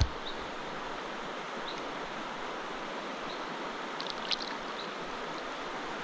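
Steady rushing of river rapids, with a brief splash about four seconds in.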